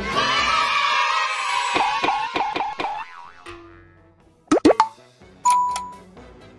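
Edited-in cartoon sound effects: a bright jingle that breaks into a quick run of springy falling 'boing' sounds, about five in a second and a half. After a quiet gap come two quick pops and then a short ringing tone near the end.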